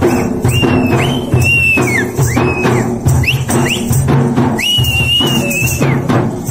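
Dappu frame drums beaten with sticks in a fast, steady rhythm, with a whistle blown over them in short rising-and-falling blasts and one long blast near the end.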